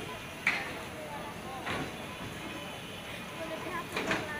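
Railway station ambience: indistinct background voices over a steady hum of noise as a passenger coach rolls slowly past. Sharp clacks come about half a second in, again near two seconds, and at the end.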